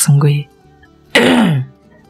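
Spoken narration over soft background music. About a second in there is a short, breathy vocal sound that falls in pitch, like a throat clear or an exclamation.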